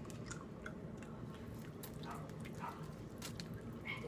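Faint chewing of BeanBoozled jelly beans: soft, scattered mouth clicks as several people bite and chew at once.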